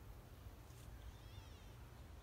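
Near silence: a faint low outdoor background, with a faint high wavering call from a distant bird about a second in.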